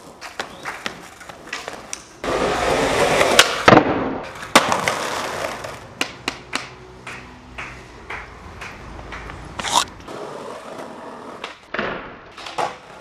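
Skateboard on pavement: wheels rolling over rough asphalt, with sharp clacks from the board popping and landing several times.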